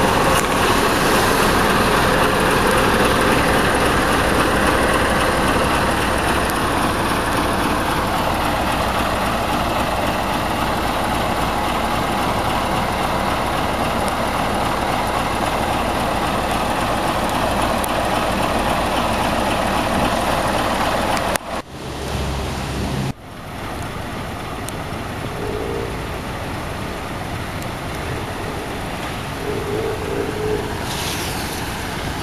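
Diesel engine of a Hino Super Dolphin Profia log truck idling steadily with a low hum, under a louder rushing noise that fades over the first several seconds. The sound cuts out briefly twice about two-thirds of the way through.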